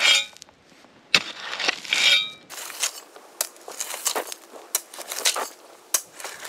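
Metal shovel scraping into a pile of loose gravel, with a sharp click about a second in and a short metallic scrape around two seconds, then a run of irregular gravel crunches.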